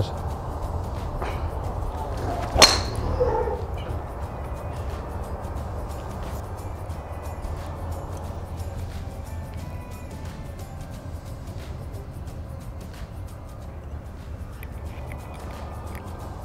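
A single sharp crack of a Srixon driver with a stiff shaft striking a golf ball, about two and a half seconds in, over steady background music.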